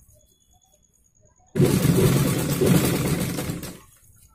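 Sewing machine running in one burst of about two seconds, starting suddenly about one and a half seconds in and dying away near the end, stitching a line of topstitching over the piping on a blouse neckline.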